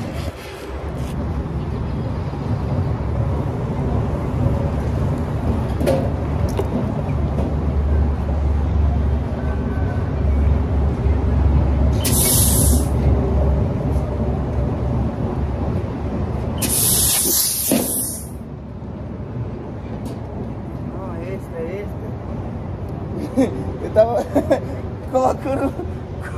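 Compressed air from a petrol-station air hose hissing in two short bursts at the tyre valve as a bicycle tyre is inflated, the second burst longer, over a steady low rumble.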